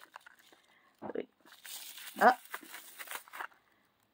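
Tissue paper crinkling and rustling as it is pulled out of a miniature toy purse, starting about a second in and stopping a little after three seconds.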